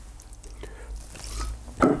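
Faint handling sounds of a plastic bottle of methylated spirit being tipped onto a cotton wool pad to wet it, with a few small ticks. A short laugh comes near the end.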